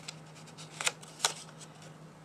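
Paper leaves rustling and crackling as a toothpick is pushed through a punched hole in them, with two sharp crackles about a second in.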